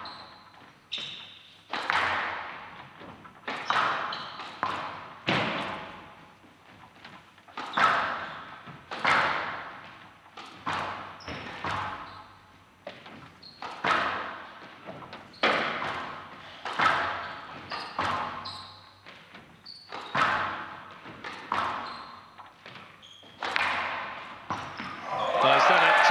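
Squash ball being struck back and forth in a rally on a glass court: sharp smacks of racket on ball and ball on wall, about one a second, each echoing briefly in a large hall. Near the end the rally is won and crowd applause breaks out.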